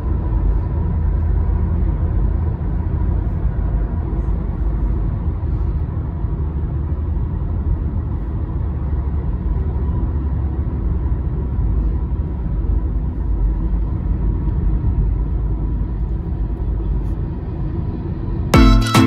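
Cabin noise of a Honda City 2020 petrol sedan cruising at highway speed: a steady low rumble of road and engine noise heard from inside the car.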